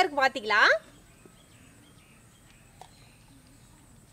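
A woman speaking for under a second, then faint outdoor background with a single soft click about three seconds in.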